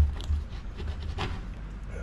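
A knife cutting limes on a wooden table: a loud thump of the blade on the table at the start, then a couple of faint clicks.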